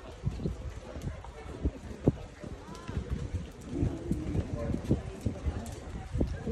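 Horses loping around a dirt show arena: irregular hoofbeats, one sharper knock about two seconds in, with faint voices underneath.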